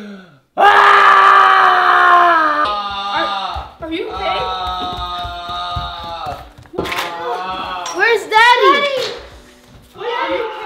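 A man wailing and groaning in staged pain after a pretend fall, a string of long drawn-out cries that sag in pitch and, near the end, waver up and down. Low thumps of footsteps run under the cries from about three seconds in.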